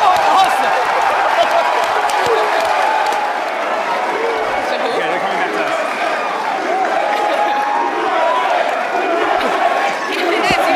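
Large crowd cheering and clapping, many voices overlapping into a steady din.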